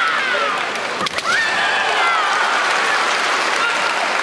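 Drawn-out, high-pitched kiai shouts from kendo fencers: one long cry falling in pitch, a sharp crack about a second in, then a second long cry falling away.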